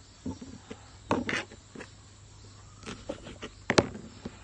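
Food and plate handling on a table: a few short taps and rustles as sandwich pieces of bread and salad are moved by hand, with the loudest knock near the end.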